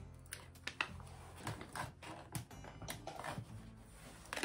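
Small plastic cosmetics packaging being handled and opened, making a string of faint, irregular clicks and taps.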